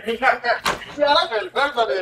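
Several men talking over one another, with one sharp smack about two-thirds of a second in.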